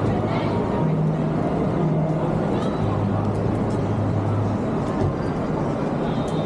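Busy city street: the chatter of a crowd mixed with traffic, and the low steady hum of idling engines that swells and fades.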